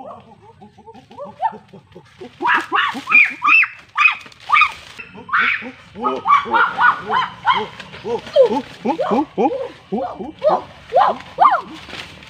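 Rapid run of short, high-pitched vocal calls that slide up and down in pitch, several a second and overlapping, starting about two seconds in.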